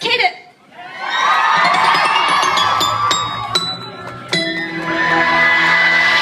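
Concert crowd cheering and shouting as a J-pop song's electronic intro starts over the PA. Bass notes and sharp percussive hits come in about a second and a half in, and the music fills out with held synth tones about four seconds in.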